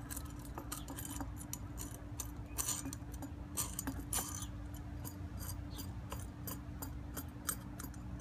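Small metal clicks and jingles of quarter-inch nuts, flat washers and lock washers rattling on a threaded rod as it is turned and threaded through a hole in a metal ring.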